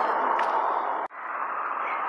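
Steady hiss of road traffic passing close by, which breaks off abruptly about a second in and comes back a little quieter.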